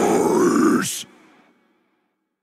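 The final moment of a grindcore song: a drawn-out guttural vocal growl over the last ringing of the band, stopping sharply just under a second in, then silence between tracks.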